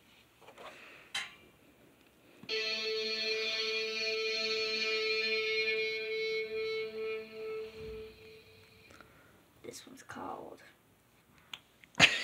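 A single sustained electric-guitar note in a distorted 'hard rock' tone from a tablet guitar app, played through the tablet's speaker. It starts about two and a half seconds in, holds steady for about four seconds, then fades out unevenly and is gone by about nine seconds.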